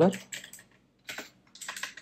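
Typing on a computer keyboard, in three short bursts of keystrokes.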